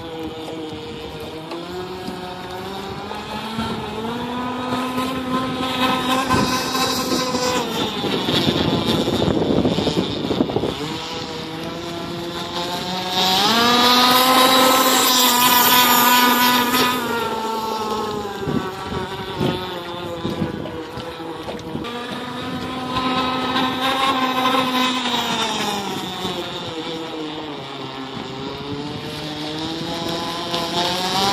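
Pro Boat Rockstar 48 radio-controlled catamaran's brushless electric motor whining at speed across the water. The pitch rises and falls with throttle and turns. It is loudest and highest a little before the middle as the boat passes close, with a hiss of water spray.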